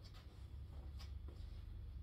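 Faint scuffs and soft steps of sneakers on a hard floor as a foot steps out into a lunge, a few short scratchy sounds over a low steady hum.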